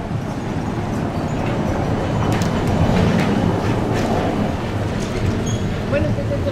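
A red city bus passing close by in the street. Its rolling rumble swells to a peak about halfway through and then eases, with a few clicks and rattles along the way.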